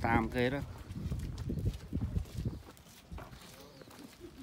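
A person's voice sings or hums a quavering, wavering "mơ mơ" in the first half second. After that there is only a low, uneven rumble with footsteps on pavement.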